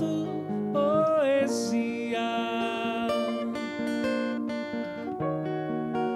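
A slow song played live on acoustic guitar and grand piano, with a sung note bending up and down about a second in.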